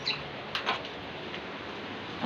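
Steady hiss of rain falling, with a few short clicks and knocks near the start and about half a second in.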